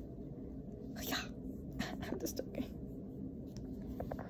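A young woman's soft whispering and breaths, in a few short bursts, over a low steady room hum.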